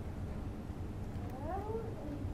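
A short meow-like call, rising and then falling in pitch, near the end, over a steady low room hum.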